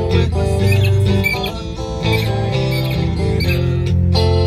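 Guitar being played: chords and single notes, with sustained low bass notes that change every second or so.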